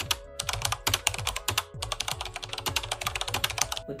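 Keyboard typing sound effect: a quick, uneven run of key clicks that stops just before the end, over background music with a deep bass beat.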